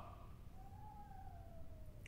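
A quiet pause with low room tone and one faint high tone that begins about half a second in and slides slowly down in pitch.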